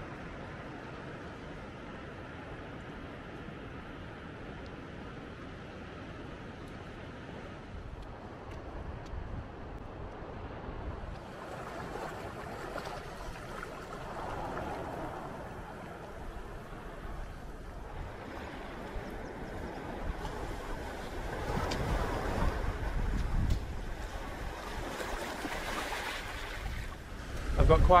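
Sea waves on a rocky shore: a gentle, steady wash of lapping water at first, then from about eleven seconds in a fuller, hissing surf that swells and ebbs as waves break over the rocks.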